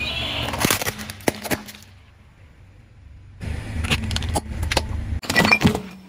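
A car tire rolling slowly over objects on pavement, crushing a plastic toy and sticks of chalk. The low rumble of the car comes with sharp cracks and crunches as they break. There are two bursts with a short lull between them, and the loudest cracks come near the end.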